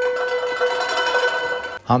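Music for a stage folk dance: a long held note with its overtones over lighter accompaniment, cut off abruptly just before the end, where a narrator's voice begins.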